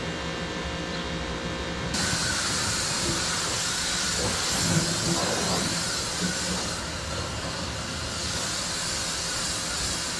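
Pressure washer's motor running steadily; about two seconds in the wand is triggered and the high-pressure water jet hisses steadily as it sprays fresh manure off a Bobcat skid steer.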